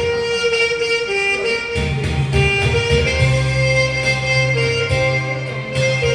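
Saxophone playing a slow melody in long held notes over a recorded backing track with a bass line and accompaniment.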